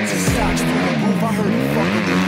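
Rap backing music playing, with a dirt bike engine revving, its pitch dipping and rising, as the bike comes closer.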